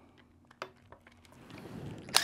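Quiet tool handling: a hex driver is set into the small pin screw of an RC motorcycle's rear suspension knuckle. There is one sharp click about half a second in, a few faint ticks, and light handling noise building near the end.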